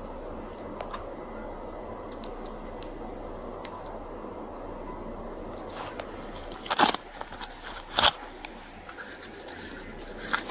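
Steady hum inside a patrol car's cabin, with a few faint clicks in the first half. About seven and eight seconds in come two loud scraping rustles, then smaller ones, as the body-worn camera rubs against clothing.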